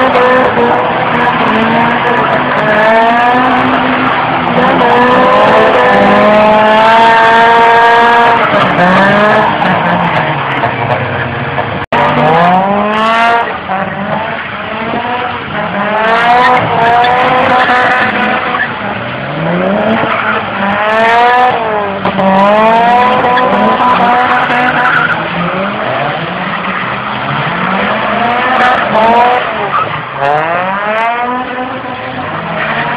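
Drift cars sliding on wet tarmac, their engines revved hard and repeatedly rising and falling in pitch as the throttle is blipped, over tyre skid noise. There is a sudden break about 12 s in, after which a Nissan Skyline's engine keeps revving up and down through its slides.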